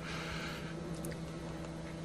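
Quiet room tone between spoken lines: a steady low hum, a soft hiss in the first half second, and a faint click about a second in.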